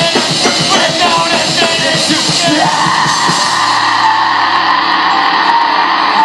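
Live rock band playing loud, fast drums and distorted guitar under a yelled vocal. About two and a half seconds in, the drum beat stops and a long held note rings out over a sustained chord.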